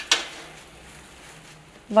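Quiet room tone with a faint steady hum between words. A woman's voice trails off at the start and begins again just before the end.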